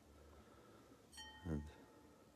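A single short chime, one clear ringing tone, sounds about a second in and dies away quickly; a brief sound of a voice follows.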